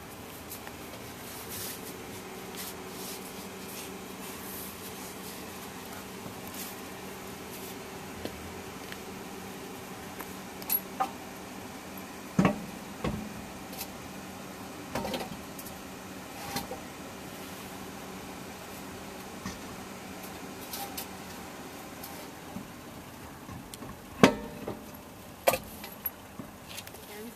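Scattered metallic clinks and knocks of a car wheel being slid onto the hub studs and wheel nuts being handled, the loudest about halfway in and near the end, over a steady low hum.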